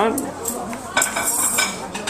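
Light metallic clinks and rattling, a cluster of them about a second in, with faint voices in the background.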